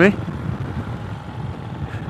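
Royal Enfield Himalayan's 411 cc single-cylinder on the move, a low engine and road rumble with wind noise that slowly dies away as the engine cuts out. The rider suspects the broken ABS sensor could be behind it.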